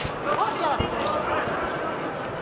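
Punches landing in a close boxing exchange: a few dull thuds, about one every second, over shouting voices in the arena.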